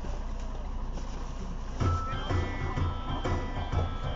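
Steady low background hum, then about two seconds in music with a pulsing bass beat, about three beats a second, comes in.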